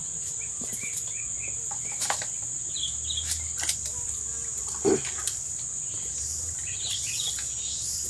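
Insects buzzing in a steady, high-pitched drone, with a few short bird chirps and scattered light clicks.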